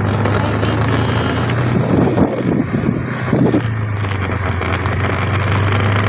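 Steady low engine hum of a moving open vehicle with wind rushing over the microphone, and a couple of brief louder sounds near the middle.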